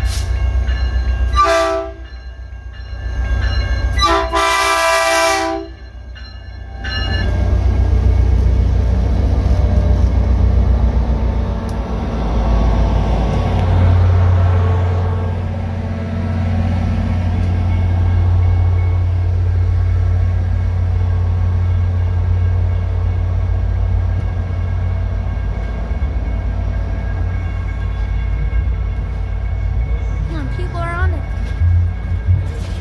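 Caltrain holiday train's diesel locomotive sounding its horn, a short blast about two seconds in and a longer one a couple of seconds later. Then the train rolls past close by with a steady, heavy rumble.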